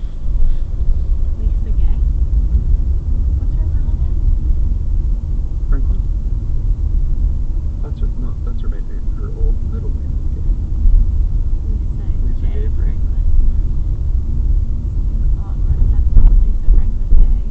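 Car cabin road and engine noise while driving: a steady low rumble.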